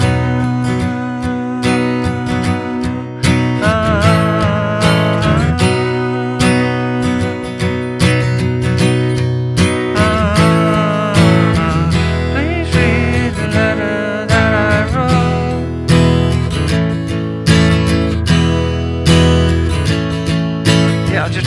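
Steel-string acoustic guitar strummed in a steady, unbroken rhythm, the strumming hand kept moving throughout while small chord embellishments are added over the changes.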